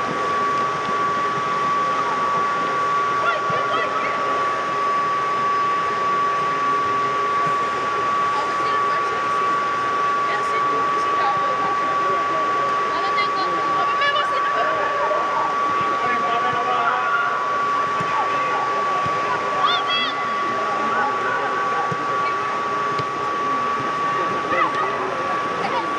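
Steady whine and rush of an air-supported sports dome's inflation blower fans, with a constant high tone. Players' shouts and voices come and go over it.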